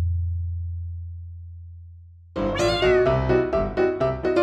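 A deep title-card boom fades away slowly. About two and a half seconds in, a short high falling meow-like sound effect comes in, and piano background music starts.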